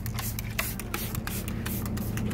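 Plastic trigger spray bottle squirting soapy water onto leaves in a run of quick spritzes, a few each second.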